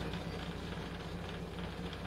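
A pause between words that holds only faint background noise: a steady low hum with a light hiss over it.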